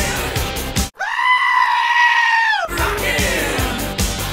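Rock music breaks off abruptly for a single high-pitched scream, held at one pitch for nearly two seconds and falling away at the end. The music then comes back in.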